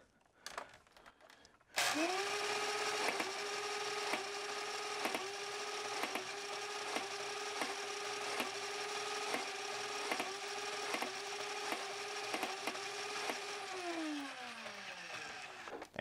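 3S-wired Nerf Rival Prometheus blaster spinning up its motors with a rising whine about two seconds in, then running at a steady whine while single rounds are fired about once a second, each a sharp snap. Near the end the motors wind down with a falling whine.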